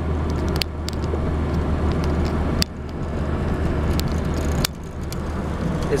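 Car cabin while driving on the interstate: a steady low rumble of engine and road noise, with a sharp click roughly every two seconds.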